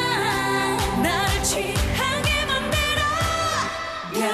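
Female K-pop vocals sung live into microphones over a pop backing track, with one note held steady for about a second in the second half.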